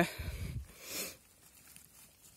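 Soft rustling and scraping of moss and dry grass under a hand gripping a bay bolete in the forest floor to pick it, with a brief louder rustle about a second in.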